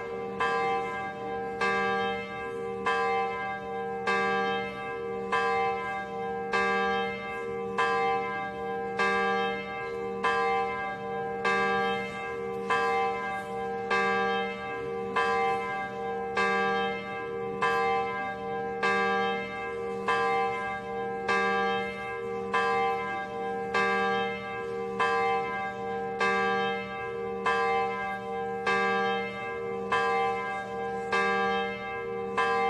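A church bell tolling steadily, about one stroke a second, each stroke ringing on into the next.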